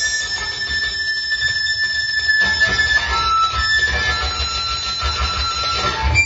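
Experimental violin music with live electronics: several high, thin held tones that step from pitch to pitch, over a low rumble.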